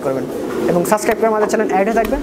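Fancy pigeons cooing in a caged loft, under a man's talk.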